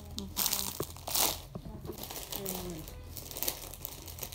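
Plastic snack packet crinkling as it is handled and torn open, with two louder rustles in the first second and a half and lighter crinkling after.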